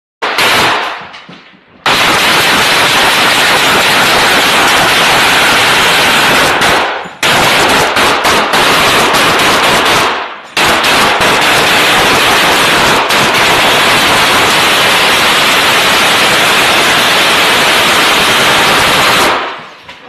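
Sustained automatic rifle fire at very close range inside a building, so dense and loud that the shots merge into a near-continuous din. After a short opening burst come three long stretches of firing, broken by brief pauses about a third and halfway through, stopping shortly before the end.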